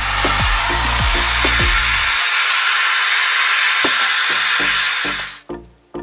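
Loud, steady hissing rub of a red-gripped rod spinning fast against a wooden tabletop, which stops abruptly about five seconds in. Bass-heavy electronic background music plays under it, dropping out about two seconds in and returning near the end.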